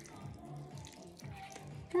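Citrus vinaigrette pouring in a thin stream from a shaker bottle onto a salad, a faint liquid trickle and patter.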